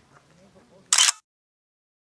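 A single camera shutter click about a second in, followed by dead silence.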